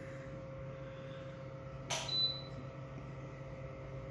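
Steady low electrical hum of running reef-aquarium equipment such as the circulation pump. About two seconds in there is one sharp click with a brief high ring after it.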